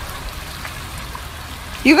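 Steady rush of shallow stream water flowing over a concrete weir and spilling off its edge. A voice begins speaking at the very end.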